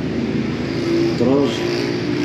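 A motor vehicle's engine running in the street, heard as a steady low rumble with noise. A man's voice comes in over it in the second half.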